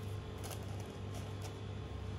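Steady low hum under a few faint, soft rustles of parchment paper and sponge as a génoise layer is pressed down into a paper-lined cake ring.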